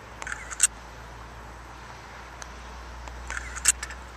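Two short clusters of sharp clicks, one about half a second in and another near the end, over a low steady rumble of distant road traffic.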